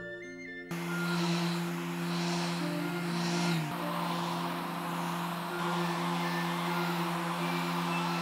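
Random orbital sander running steadily on a maple board, its noise coming in under a second in, under background music with long held notes.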